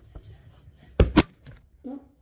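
Two sharp thumps about a second in, a fifth of a second apart: a kicked soccer ball striking the phone that is filming and knocking it over.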